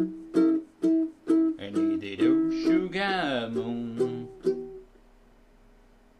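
Baritone ukulele tuned in fifths, strummed in a steady rhythm of about two strokes a second. A last chord rings out and fades away about five seconds in.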